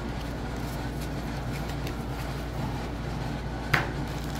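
Faint handling of Pokémon trading cards as they are gathered into a pile, light scattered ticks over a steady low room hum, with one short sharper sound near the end.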